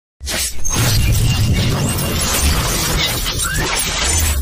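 Logo-intro sound effect: a loud, dense crashing noise over a deep bass rumble that starts abruptly a moment in and holds steady.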